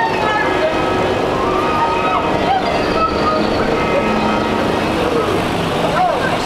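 Passers-by talking over a steady drone made of several held tones.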